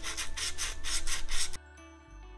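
Small abrasive pad rubbed quickly back and forth over the shellac-polished wooden body of a bass guitar, about six or seven strokes a second, smoothing a rough spot in the finish. The rubbing stops abruptly about one and a half seconds in, leaving soft background music.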